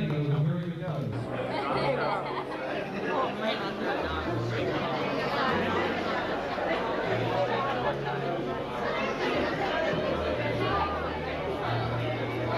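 Many guests talking at once in a large room, with background music whose low bass notes shift every second or two underneath.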